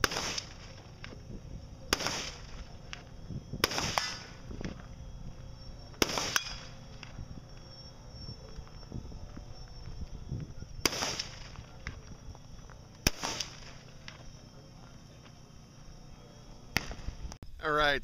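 Gunshots fired on an outdoor range, heard from some distance: about eight single sharp reports at irregular gaps of one to several seconds, each with a short echo.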